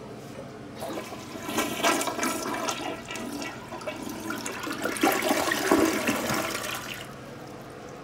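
A 2004 Kohler Highline toilet with the Ingenium flush system flushing: water rushes into the bowl and swirls down the drain, starting about a second in and dying down about seven seconds in.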